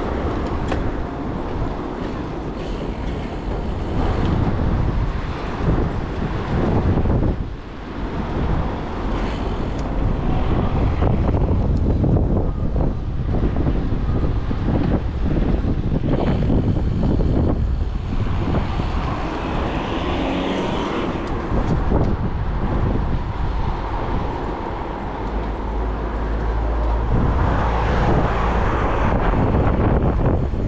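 Wind rushing over a GoPro's microphone as a bicycle rides along a city street, mixed with the noise of car traffic going by.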